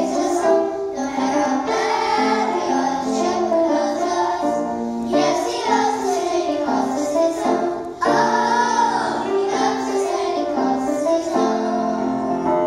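A children's choir singing a song together, in held, sung notes.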